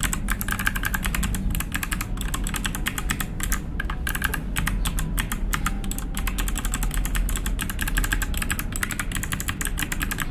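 Fast, continuous typing on an FL Esports F12 V2 mechanical keyboard with Kailh white switches and PBT keycaps: a rapid run of key clicks, several a second, with only brief pauses.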